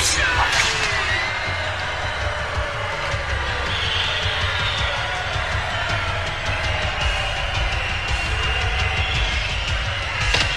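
Action-film soundtrack: background music over a steady low rumble, with a sharp hit and a falling sweep about half a second in.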